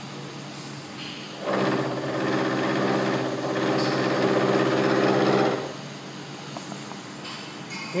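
End mill on a vertical milling machine taking a 1 mm-deep face-milling pass across a workpiece held in a vise. The cutting sound, a steady pitched hum with a rough edge, starts about one and a half seconds in and stops a little before six seconds, over the quieter running spindle.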